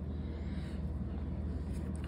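Room tone: a steady low hum with faint background hiss, and no distinct handling sounds.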